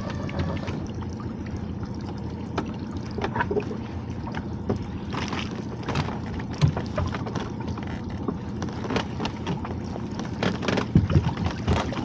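A lobster pot being hauled up through the water beside a small boat: water sloshing around it, with scattered clicks and knocks from the rope and pot over a steady low hum from the boat. Near the end the pot breaks the surface, with louder splashing and dripping.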